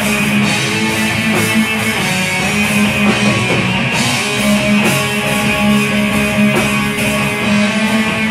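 Live heavy rock band playing: electric guitars and bass holding sustained chords over a drum kit, with drum hits recurring throughout.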